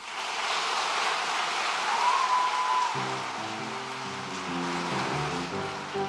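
Audience applause breaks out as the choir's song ends, with a brief whistle from the crowd about two seconds in. About halfway through, a grand piano begins playing under the continuing applause.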